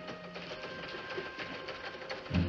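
Newsroom teletype machine clattering with rapid, steady clicking as it prints.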